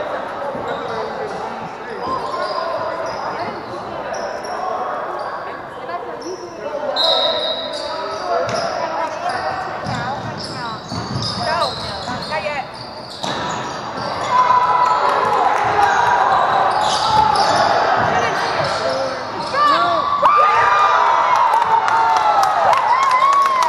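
Basketball game on a hardwood gym floor: a ball dribbling and bouncing, sneakers squeaking, and players and spectators calling out in a large, echoing hall, getting busier and louder about two-thirds of the way through.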